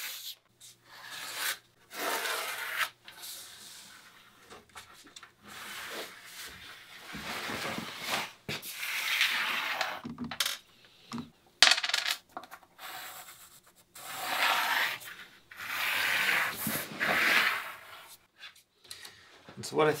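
Pencil scratching marks onto wooden boards along a thin wooden pattern, in a series of short scraping strokes with pauses between, and a few sharp clicks of small tools being set down, the sharpest a little past the middle.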